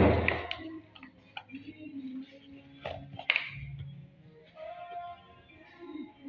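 Hands slapping and pressing dough onto a wooden board: one loud slap at the start, then a few softer knocks. Faint background music with singing runs underneath.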